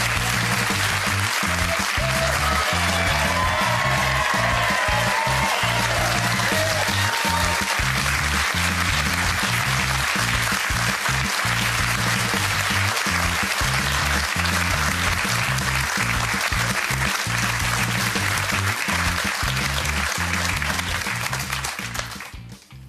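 Studio audience and contestants applauding over walk-on music with a steady beat.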